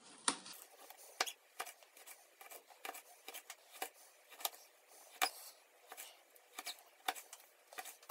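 Kitchen knife chopping food finely on a plastic cutting board: faint, irregular sharp taps of the blade hitting the board, about one or two a second.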